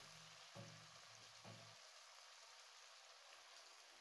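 Near silence: a faint, steady sizzle of dried peas cooking in spiced masala in a wok.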